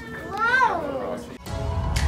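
A young child's voice in one rising-then-falling call, like a drawn-out meow. The sound cuts off abruptly and background music begins about a second and a half in.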